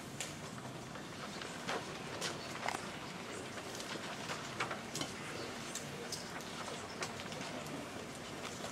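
Hushed room full of people, a steady background hiss broken by scattered small clicks, knocks and rustles, a few every second, as people shift, handle paper and move about.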